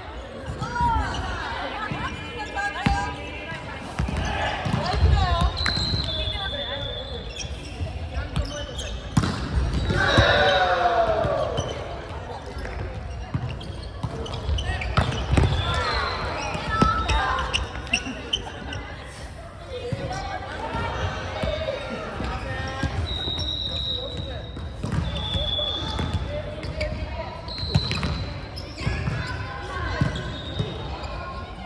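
Indoor volleyball play echoing in a large gym: the ball is struck and hits the court a few times, and players shout and call out. Short high squeaks, typical of shoes on the wooden floor, come several times.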